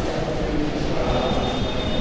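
Chalk writing on a chalkboard over a steady noisy background hum, with a faint thin high tone in the second half.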